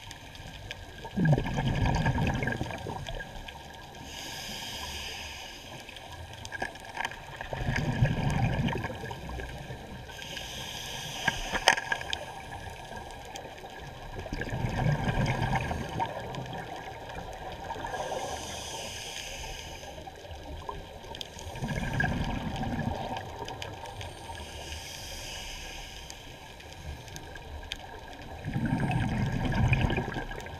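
Scuba diver breathing through a regulator underwater: a hiss of inhaling alternates with a low rush of exhaled bubbles, one breath about every six to seven seconds.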